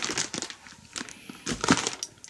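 Plastic wrapping around a boxed firework pack crinkling and rustling as it is handled, in short irregular bursts that are loudest near the end.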